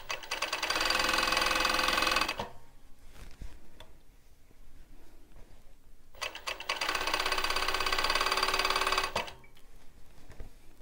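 Four-thread industrial overlocker (serger) sewing a seam through knit fabric, running in two bursts of a few seconds: one at the start and one about six seconds in, with a quiet pause between them.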